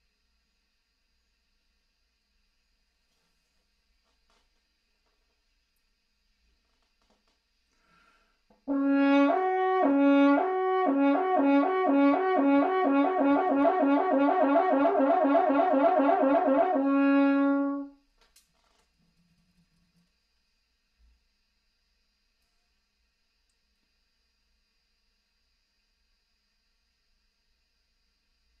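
French horn playing a lip trill on the F horn, slurring between written G and the C above (concert C and F). It starts about nine seconds in on a held low note, then alternates slowly, speeds up into a fast even trill, and ends on the held low note after about nine seconds.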